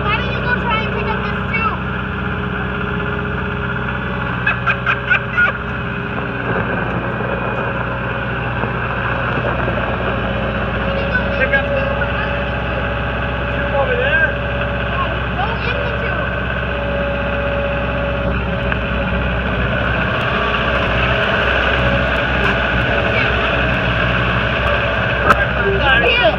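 New Holland LS170 skid steer loader's turbocharged diesel engine running steadily as the machine is driven about with its pallet forks, growing a little louder in the last few seconds.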